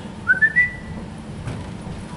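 A person whistling a short phrase of three notes, each a step higher than the last, lasting under a second, shortly after the start.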